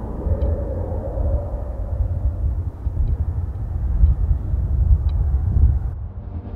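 Wind over open desert dunes: a low, gusty rumble that swells and ebbs.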